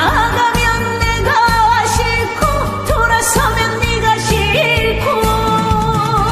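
A woman singing a Korean trot song into a microphone over a backing track with a steady beat, holding notes with a wavering vibrato. The vocal is sung live without pitch correction.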